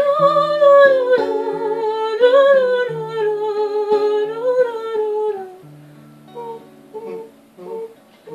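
A wordless, hummed vocal line held and gently wavering over fingerpicked acoustic guitar; the voice fades out about five and a half seconds in, leaving the guitar picking single notes alone, more softly.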